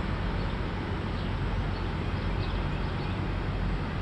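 Steady outdoor background noise with a low rumble and no distinct events.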